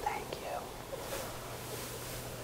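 Faint whispered voices in the first part, over a steady low electrical hum.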